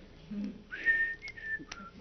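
A person whistling a few short notes: a quick rise into a held high note, then three shorter notes at slightly different pitches. Two light clicks fall among the last notes.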